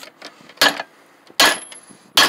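Two hammer blows on a copper tube clamped in a bench vise, flattening the tube into a busbar. The first comes just over half a second in; the second, near a second and a half, is louder and leaves a faint high metallic ring.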